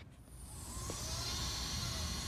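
Steady background hiss with a low hum, coming up about a quarter second in, with a few faint gliding tones.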